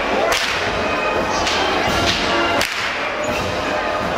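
Whips of the Rössle drivers (Treiber) cracking: a loud crack just after the start, two fainter ones in the middle, and another loud crack past halfway.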